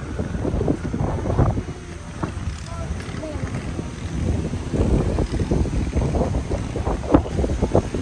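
Strong wind buffeting the phone's microphone, a gusting low rumble that rises and falls irregularly.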